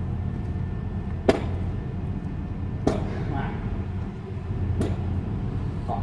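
Three sharp knocks, about one and a half to two seconds apart, over a steady low rumble.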